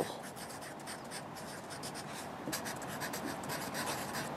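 Black felt-tip marker writing on lined paper: a quick, irregular run of short scratching strokes as letters are written.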